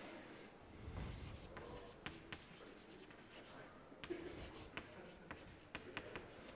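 Chalk writing on a blackboard: faint scratching, broken by a series of short, sharp taps as the chalk strikes the board.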